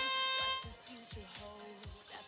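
A match-start buzzer sounds one steady tone for about half a second, signalling the start of the autonomous period. After it, background music with a steady beat plays.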